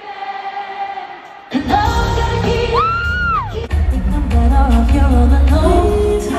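Live pop concert music with a female lead vocal: quieter held notes, then about a second and a half in the full backing with heavy bass comes in, and the voice swoops up to a high note and back down over a steady beat.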